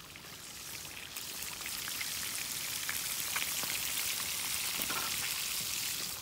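Trout pieces sizzling in hot oil in a pan over a wood fire: a dense, steady hiss flecked with small crackles, growing louder about a second in.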